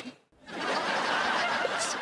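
Sitcom laugh track: a crowd laughing together, starting about half a second in and holding steady.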